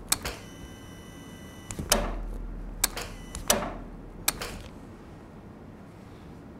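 Sharp clicks and taps of metal surgical instruments, about seven spread over the first four and a half seconds. A steady tone with several pitches sounds for about a second near the start.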